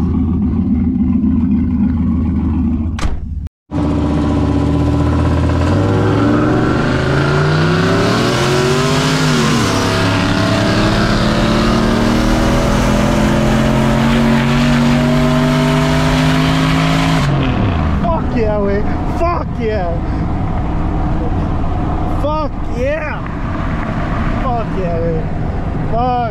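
Pickup's 402-cubic-inch stroker V8 heard from inside the cab during a roll race. It runs steadily, then after a brief break pulls hard at full throttle with its pitch climbing, dips at an upshift about nine seconds in and climbs again, then falls away as the throttle is lifted at about seventeen seconds. Voices follow.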